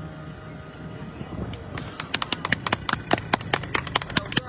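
The last chord of a digital piano fades out, then a few people start clapping about a second and a half in, the claps coming quicker toward the end.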